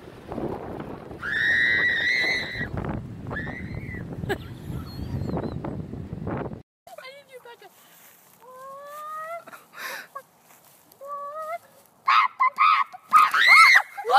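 Wind buffeting the microphone on a beach while a seagull calls loudly for about a second and a half. After a sudden cut come a few faint rising squawks from chickens, then a woman shrieking loudly several times near the end.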